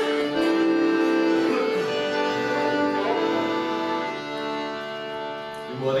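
Accordion and fiddle playing a slow air in long held notes, the melody changing slowly from one sustained note to the next.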